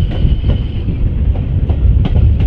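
A heritage train's coaches running along at speed, heard from an open carriage window: a heavy low rumble with irregular sharp clicks of the wheels passing over rail joints.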